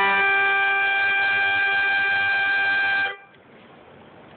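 Harmonica holding one long, steady note for about three seconds, then stopping abruptly: the final note of the tune.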